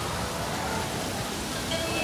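Open-deck ambience on a cruise ship: a steady wash of noise with distant voices and faint music.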